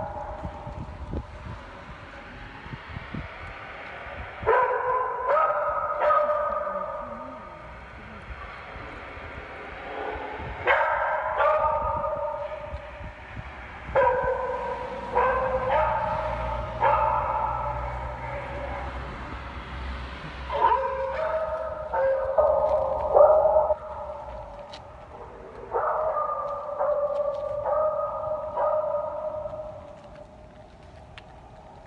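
A chorus of kennelled beagles howling and baying together: overlapping drawn-out calls that come in waves every few seconds, several opening with a sharp yelp.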